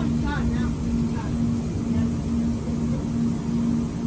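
Inside a Siemens S200 light-rail car moving along a subway platform: the low rumble of the train running, with a low tone pulsing on and off about twice a second.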